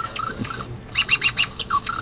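Electronic cubicle doorbell playing a recorded bird-chirp sound, a run of short chirps with a fuller burst of chirping about a second in.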